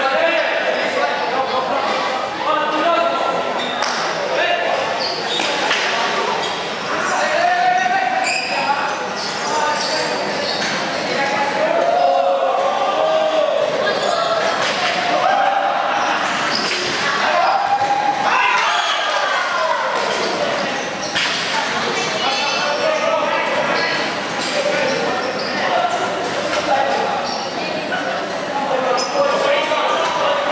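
Dodgeballs repeatedly thudding and bouncing off the hard tiled floor and the players during a dodgeball match. Throughout, players and spectators keep up a mix of shouts and chatter that echoes in a large hall.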